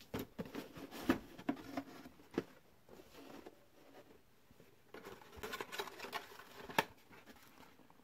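A cardboard costume box and the thin plastic Halloween mask inside it being handled and pulled apart: irregular crinkling, scraping and small clicks. The sounds come busiest at the start and again toward the end, with a quieter lull in the middle.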